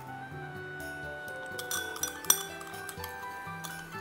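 Background music of steady held notes, with a few light clinks of a glass being handled at the counter. The sharpest clink comes a little past halfway and rings briefly.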